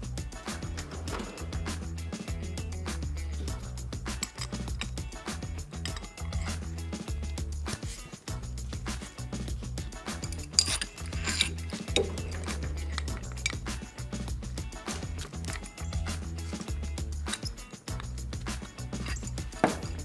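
Background music with a repeating bass line, over light metallic clinks and clicks of pipe fittings and a wrench being handled as bushings and adapters are screwed onto the PEX joints. There are a couple of sharper clinks about halfway through.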